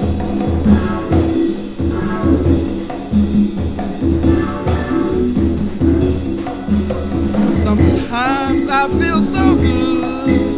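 Recorded soul-jazz band playing a mid-tempo groove: a repeating bass line and drum kit beat with organ. About eight seconds in, a lead voice comes in singing with wide vibrato.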